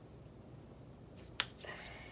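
A single sharp click about one and a half seconds in, against quiet room tone.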